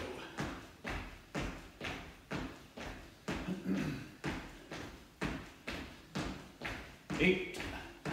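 Feet of two people landing on the floor during jumping jacks: a thud about twice a second in a steady rhythm.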